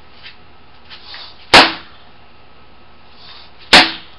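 Two hard open-hand strikes onto a quarter piece of concrete patio slab set on cinder blocks, each a sharp smack with a short tail, about two seconds apart. The slab stays whole.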